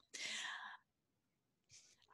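A person's brief, faint breathy voice sound lasting about half a second, with no clear words, followed by silence.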